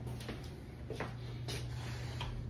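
A few light footsteps on a hard floor, about half a second to a second apart, over a steady low hum.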